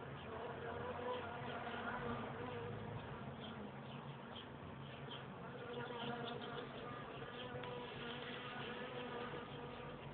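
Honeybee colony buzzing in an open hive: a steady, wavering hum of many bees, with faint scattered ticks over it.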